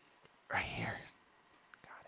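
A person's voice whispering briefly and softly, starting about half a second in, then near silence.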